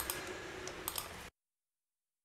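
A few sharp clicks from a computer keyboard and mouse, then the sound cuts out to dead silence about two-thirds of the way through.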